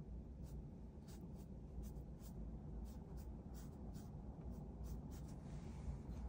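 A paintbrush loaded with ink making quick strokes on textured paper: short, quiet scratches, two or three a second, over a steady low room hum.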